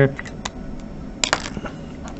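Sharpie fine-point marker dabbing on paper to colour in a dot, with a few small clicks and then two sharp clicks in quick succession a little past the middle.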